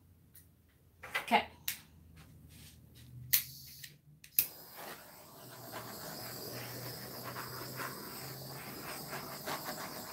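A few sharp clicks, then from about four seconds in the steady hiss of a small handheld torch's flame, played over freshly poured epoxy art resin to pop its air bubbles.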